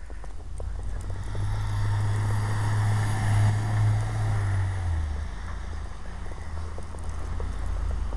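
A motor vehicle driving past close by: a low engine hum with tyre noise that swells about a second in, then drops in pitch and fades after about five seconds.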